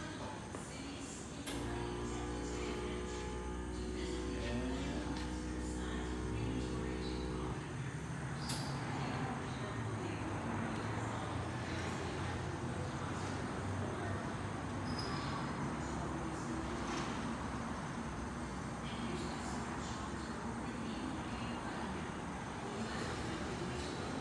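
Emissions analyzer bench running its post-calibration cycle: a steady multi-pitched hum starts about a second and a half in, then gives way about seven seconds in to a steady rushing noise with a few clicks as zero air flushes the gas manifold.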